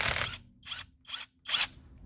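A cordless impact wrench undoing a car's wheel nut, a nut that had been tightened hard with a pipe. A run of the motor ends about a quarter second in, followed by three short trigger bursts spinning the nut off.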